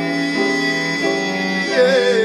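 A live slow song: a man singing a long held note over instrumental accompaniment, his voice sliding in pitch near the end.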